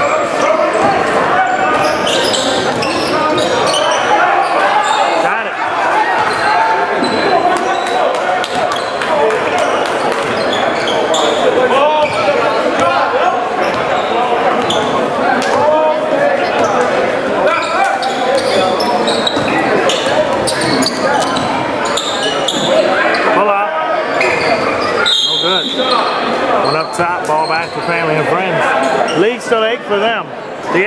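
Live basketball in a gymnasium: a ball bouncing on the hardwood court, with short knocks throughout and a steady mix of players' and spectators' voices echoing in the large hall.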